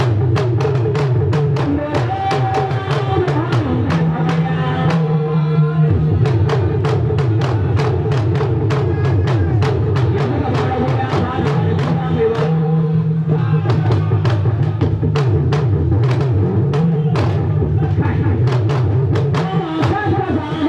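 Drum-led music with a steady, fast beat of about four strikes a second, with a voice over it.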